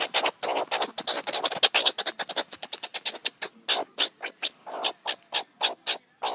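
Meerkat giving a rapid run of short, raspy calls, about seven or eight a second at first, then spacing out to about four a second.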